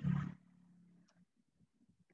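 A man's voice ends a sentence and trails off into a low held hum for about a second. Then it is almost quiet, with one faint click.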